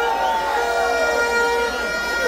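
Rally crowd noise with a horn blowing a long steady note that breaks off briefly twice.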